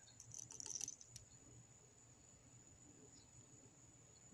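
A quick run of light clicks from a hand screwdriver being handled in the first second, then near silence.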